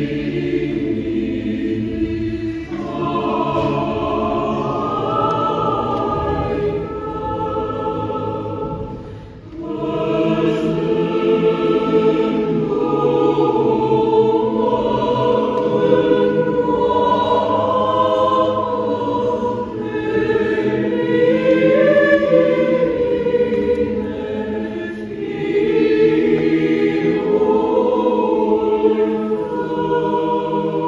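Mixed choir of women's and men's voices singing sustained chords, with a brief break between phrases about nine seconds in.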